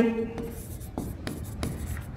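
Pen writing on a board: light scratching strokes and small taps as a word is handwritten.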